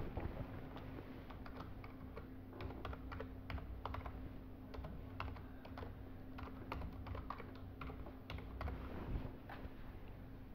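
Typing on a computer keyboard: faint, irregular key clicks, a few per second.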